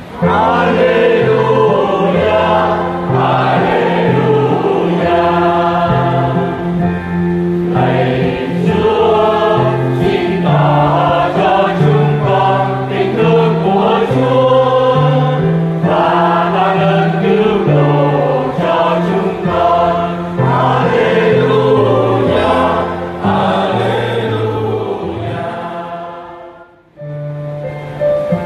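A church choir singing an Alleluia with instrumental accompaniment. Near the end the music dies away for a moment, and a new piece starts.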